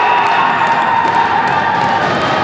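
Spectators cheering a goal at an ice hockey game, with one voice holding a long high yell over the crowd noise for about a second and a half.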